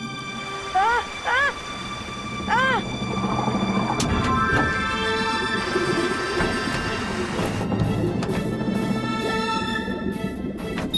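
A man laughing in three short bursts, then cartoon background music with long held tones.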